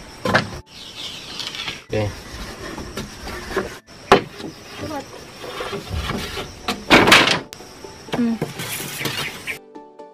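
Bamboo poles and wooden framing knocking and clattering as they are handled during building work, with a few short spoken words in between. Background music comes in suddenly near the end.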